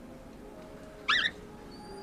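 A cat gives one short, high-pitched, wavering meow about a second in, over faint background music.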